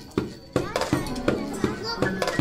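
Children's voices making short, quick sounds one after another, about three or four a second, each starting sharply and fading fast.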